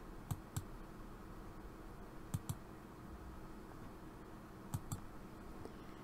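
Computer mouse clicking: three pairs of short clicks spaced a couple of seconds apart, over faint room tone.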